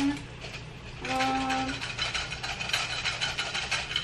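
Water bubbling in a pot on the stove: a crackling hiss that thickens about a second in, over a steady low hum.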